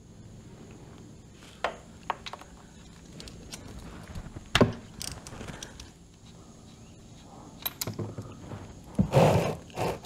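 Hand tools clicking and knocking against metal as the 17 mm engine-oil drain bolt of the motorcycle is worked, a few scattered strikes over a steady low hum, with a brief rustling burst near the end.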